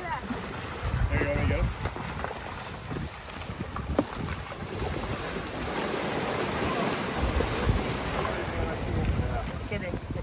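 Small waves breaking and washing over a rocky cobble shoreline, with wind buffeting the microphone in uneven gusts.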